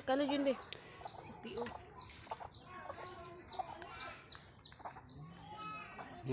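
Chickens clucking, with a run of short high calls, each falling in pitch, about two a second; a voice is heard briefly at the start.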